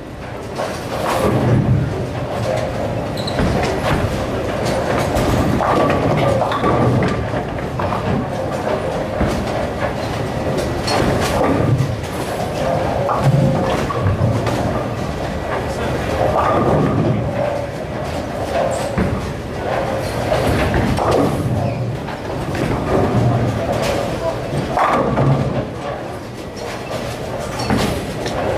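Bowling center ambience during play: balls rolling down the lanes and pins crashing on several lanes, in a steady din of indistinct chatter and background music.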